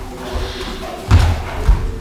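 Boxers sparring in a ring: two heavy thuds, one about a second in and another just over half a second later, from gloved blows and footwork on the ring canvas.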